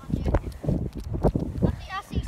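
Phone being carried and swung while walking, giving a run of thuds and handling knocks. Near the end comes a short wavering bleat-like call.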